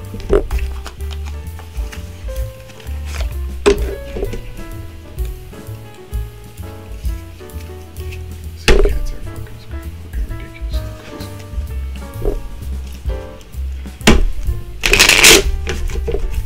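A tarot deck being shuffled by hand, with a few sharp card taps spread through and a longer rush of card noise near the end, over soft background music.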